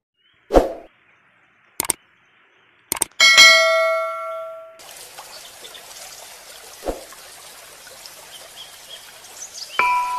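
Edited intro sound effects: a sharp hit, a few clicks, then a ringing ding that cuts off abruptly about five seconds in. After it comes a steady outdoor hiss, and mallet-percussion music notes begin right at the end.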